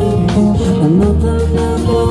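Live acoustic guitar, bass guitar and drum kit playing a song together, with held notes and a sliding bass line.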